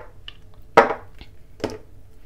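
Cosmetic jars and bottles being set down on a wooden tabletop: two short knocks, the first and louder about a second in, the second near the end.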